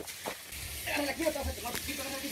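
Pressurised water spraying from the pipes under a sink cabinet, a steady faint hiss, with faint voices from the room in the middle of it.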